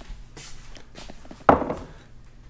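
Kitchen handling sounds of a bowl and dishes: light taps and knocks, with one louder knock about one and a half seconds in.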